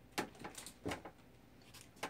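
A few light knocks and clicks of things being handled on a desk: a quick cluster in the first second, two of them louder, and a fainter one near the end.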